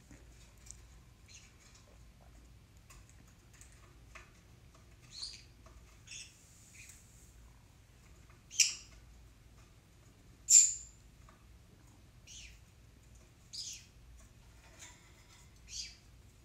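Caged pet birds chirping in short, high calls every second or two, the two loudest a little past halfway.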